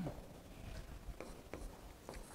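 Pen writing on an interactive whiteboard screen: a few faint, light taps and ticks as the strokes are made.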